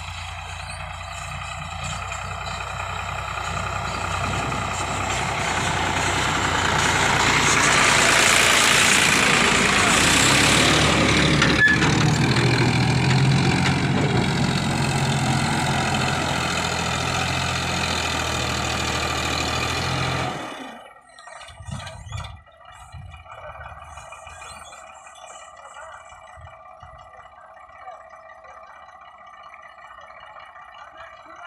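Sonalika 750 DI tractor's diesel engine working, growing louder over the first several seconds and holding, then cutting off abruptly about twenty seconds in. A much fainter sound with steady tones follows.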